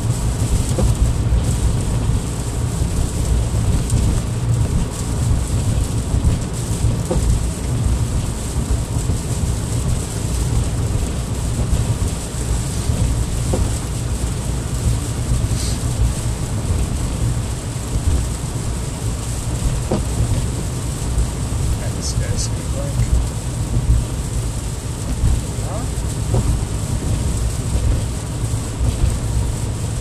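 Cabin noise of a car driving on a wet road: a steady low rumble with the hiss of tyres on wet pavement and rain on the windshield.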